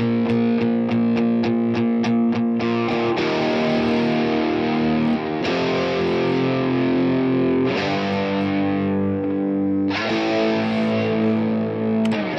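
Heavily distorted electric guitar track playing through the BIAS FX 2 amp simulator: quick chugging strikes, about three a second, for the first few seconds, then held chords that change every two to three seconds. Crackling runs through it, which could come from the plugin's power amp stage being fed a hot input signal.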